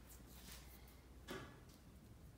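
Near silence: faint room tone with a low hum, and a soft click a little over a second in from hands handling a small cigarette tube.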